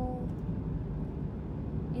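Steady low road rumble heard inside a moving car's cabin: tyre and engine noise while driving.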